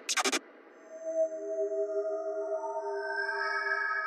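Dark psytrance track: the beat cuts off in the first half-second, then sustained synthesizer tones come in one after another and hold as a steady chord.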